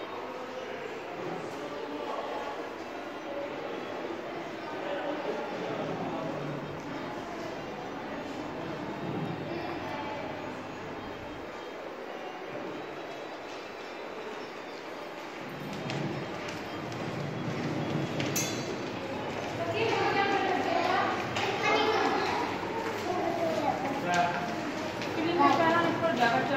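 Indistinct voices of people talking in a large, echoing indoor hall over steady room noise. The talking grows louder and nearer about twenty seconds in.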